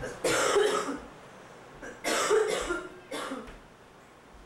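A person coughing three times, two heavy coughs about two seconds apart and a shorter one just after the second.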